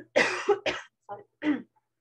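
A woman coughing in a quick run of short coughs, the first two the loudest, then two weaker ones, with a quiet "sorry" among them.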